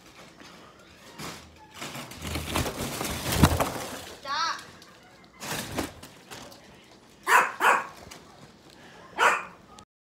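Foil balloons crinkling and rustling as they are handled, with a brief warbling whine about four seconds in. Near the end a German Shepherd gives two quick barks, then one more, the loudest sounds here.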